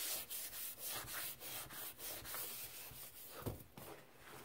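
Fingers raking and crumbling through a heap of dry Ajax powdered cleanser: a dry, gritty hiss in quick repeated strokes, about four a second. There is a soft thump about three and a half seconds in.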